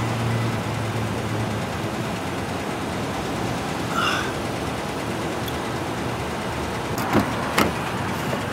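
Steady parking-lot traffic noise, with a low engine hum fading away in the first couple of seconds and a brief high chirp about halfway. Near the end come two sharp clicks about half a second apart, the sound of a car door being unlatched and opened.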